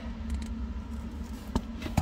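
Jewelry pliers twisting open a small gold-colored jump ring, with one faint sharp metallic click about one and a half seconds in, over a steady low background hum.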